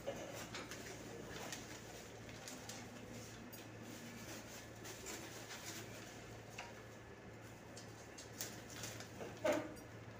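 Faint crinkling and tapping of foil-faced duct insulation and aluminium tape being handled, over a low steady hum, with a short louder sound near the end.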